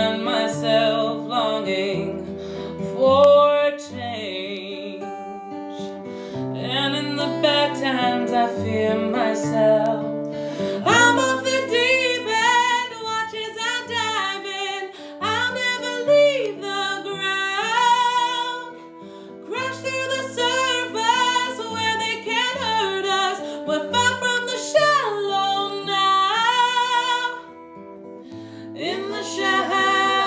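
A woman singing over an acoustic guitar in a live acoustic song. Her voice grows louder and fuller about a third of the way in, with two brief lulls later on.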